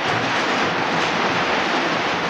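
A steady, even rushing noise like a hiss, with no speech over it.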